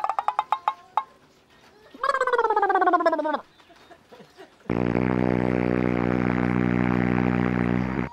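Comic sound effects: first a quick rattle of clicks with a tone, then a pitched whine sliding downward for about a second and a half, then a long steady buzzing tone that cuts off suddenly at the end.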